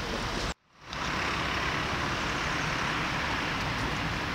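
Steady road traffic noise, a hiss of passing cars, cut off abruptly about half a second in and fading back up within about half a second, then running on evenly.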